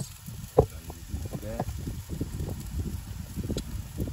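Indistinct, muffled voice sounds over a low rumble, with a sharp knock about half a second in.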